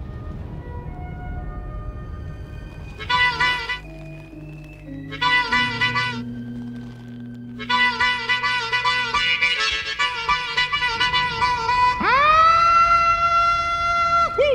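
Blues harmonica. After a few seconds of quiet background music come two brief bursts of chords, then a longer run of quick notes, ending on a long note bent up in pitch and held.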